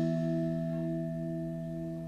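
Bronze gamelan instruments ringing out after the last struck notes, several sustained tones slowly fading away, one pulsing with a slow wobble.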